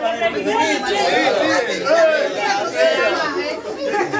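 Several people talking at once: overlapping chatter of a group, with no words standing out.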